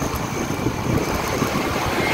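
Steady engine and road noise of scooters riding side by side in traffic, with no distinct events.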